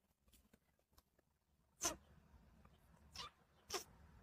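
Three short, sharp kiss sounds made close to the microphone, a little under two seconds in, at about three seconds and just before the end.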